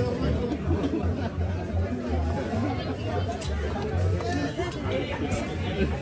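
Voices chattering around a busy market stall, with several people talking at once and a few short knocks.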